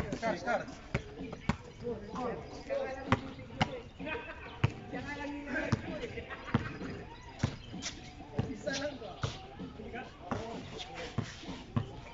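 A basketball being dribbled on a hard court: a run of sharp bounces, irregularly spaced about half a second to a second apart.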